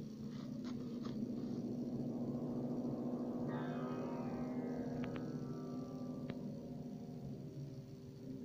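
Background music: a held, low droning chord. About halfway through, a higher tone begins sliding slowly downward.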